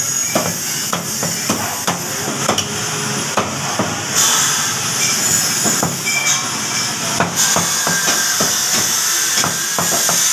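Steel meat cleavers chopping mutton on wooden chopping blocks: a run of sharp, irregular chops, a few a second, from more than one block at once. A steady hiss runs underneath and grows louder about four seconds in.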